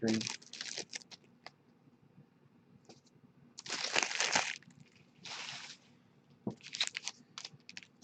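Card-pack wrapping crinkled and torn in two short bursts, followed by a few light clicks.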